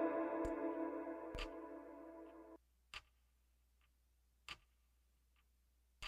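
Instrumental outro of a hip-hop track: sustained chords fade and cut off abruptly about halfway through. A few sharp clicks follow, about a second and a half apart.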